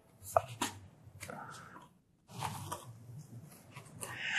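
Gloved fingers poking the perforated tabs out of thin card packaging: quiet rustling and scraping of card with a few small clicks, stopping briefly about two seconds in.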